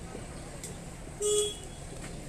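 A vehicle horn gives one short toot about a second in, over steady street traffic noise.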